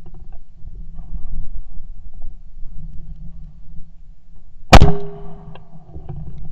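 A single loud, sharp shot from a Yildiz Elegant A3 TE Wildfowler 12-gauge side-by-side shotgun about three-quarters of the way through, breaking the clay, followed by a short ringing tone. A low steady rumble runs underneath.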